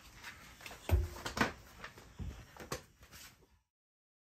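Clothes being pushed by hand into the drum of a front-loading washing machine: a dull thump about a second in, then several light knocks and rustles. The sound cuts off suddenly near the end.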